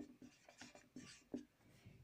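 Felt-tip whiteboard marker writing on a board: a few faint, short strokes of the pen tip, ending about a second and a half in.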